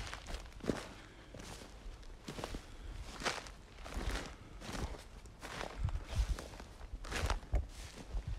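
Walking footsteps on frosty, snow-dusted grass, a steady step about every 0.8 seconds.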